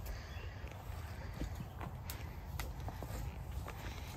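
A horse stepping on the soft forest floor and rubbing against low cedar branches to scratch itself, with a soft rustle of foliage and a few scattered sharp clicks.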